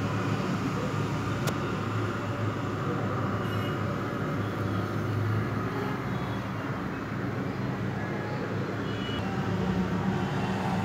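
Steady low rumbling background noise with an even hum, and a single sharp click about a second and a half in.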